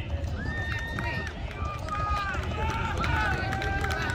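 Drift car tyres squealing: a wavering high screech that holds, then jumps and slides in pitch, over a steady low engine and crowd rumble.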